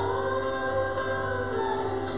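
Two women singing a worship song into microphones over steady instrumental accompaniment, one voice rising at the start into a long held note.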